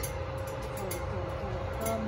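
Steady low hum with a faint constant tone from an open kitchen oven, with no distinct knocks or clicks.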